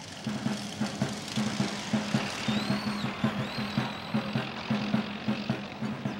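Engines of a group of motorcycles riding past in a parade, mixed with music, with a low pulse repeating a few times a second.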